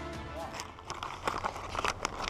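Background music fading out, then paper wrapping crinkling in quick, irregular crackles as a gift is unwrapped by hand.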